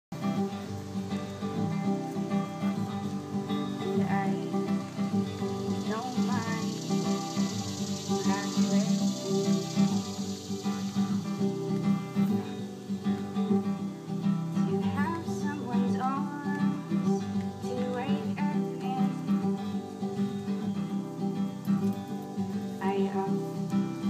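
Acoustic guitar played live in a steady rhythm, amplified through PA speakers.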